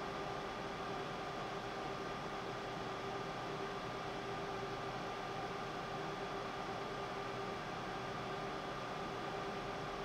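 Steady room noise from a running fan or small motor: an even hiss with a constant hum of a few fixed tones, unchanging throughout.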